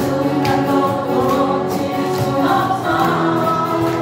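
A group of women singing together while strumming acoustic guitars, a steady strummed accompaniment under the sung melody.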